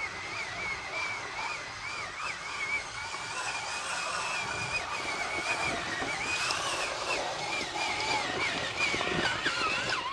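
Traxxas Summit RC truck's electric motor whining as it is driven through a creek, the pitch wobbling up and down with the throttle and sliding lower near the end.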